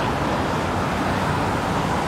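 Steady road traffic on a multi-lane highway: cars and buses passing with a continuous mix of engine and tyre noise, no single vehicle standing out.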